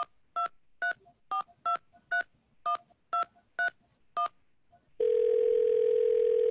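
Touch-tone telephone being dialled: about ten short two-note key beeps, then a steady ringing tone on the line starting about five seconds in.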